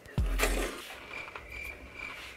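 A spoonful of cereal and milk taken into the mouth with a sharp knock of the spoon just after the start, then faint, irregular clicks of chewing.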